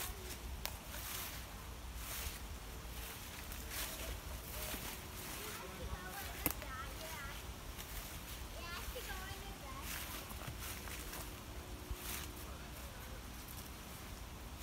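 Footsteps crunching and rustling through dry fallen leaves, in short irregular bursts about once a second, with faint voices of people talking further off along the trail. One sharp click comes about six and a half seconds in.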